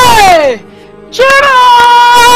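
A woman's loud wailing cry: one cry that falls in pitch and breaks off about half a second in, then a second cry starting just after a second, held at one high pitch.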